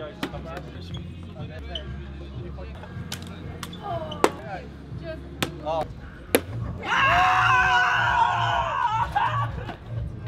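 A plastic water bottle knocks sharply on a hard arena floor several times, the loudest knocks about four and six seconds in. A man's voice then gives one long shout from about seven to nine seconds, over low background music.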